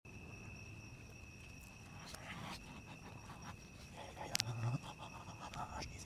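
Faint, steady high-pitched insect trill, with scattered light clicks and a sharp click and low thump about four and a half seconds in.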